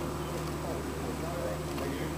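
Steady low drone of machinery running, one unchanging pitch with overtones, with faint voices in the background.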